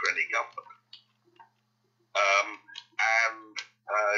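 A person talking, with a pause of about a second early on before the speech resumes.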